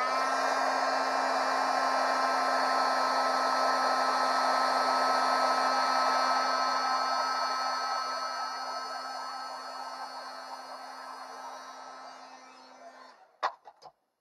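Embossing heat gun blowing steadily while it melts white embossing powder on a stamped sentiment, with a steady motor hum under the rushing air. It fades over its last several seconds and stops about thirteen seconds in, followed by a couple of light clicks.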